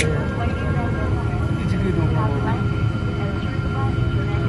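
Airliner cabin noise while taxiing: a steady low rumble from the jet engines and airframe with a faint steady whine, and voices talking in the cabin. A brief sharp click right at the start.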